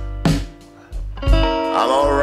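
Delta blues band recording: guitar over a drum beat, with a drum hit at the start and another about a second later. A bending note comes in near the end.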